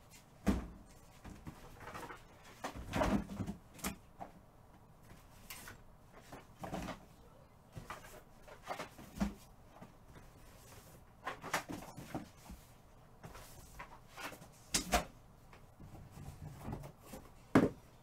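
Irregular knocks, taps and thuds of objects being handled and set down in a small room, about a dozen spread through the stretch with quiet gaps between.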